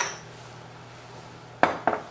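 Ceramic dishes clinking on a stone countertop: a sharp clack with a short ring as a bowl is set down, then two quick knocks of crockery near the end.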